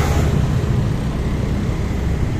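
Motorcycle engine running steadily while riding in traffic, with road and wind noise, heard from the rider's seat.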